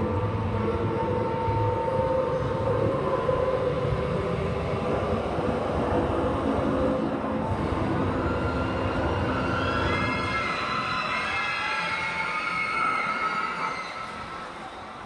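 A steady, train-like rumble with sustained tones over it, as from a sound-effects track played for a staged show. About eight seconds in, several higher tones glide upward and overlap.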